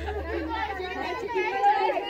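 Several people's voices chattering over one another, no words clear.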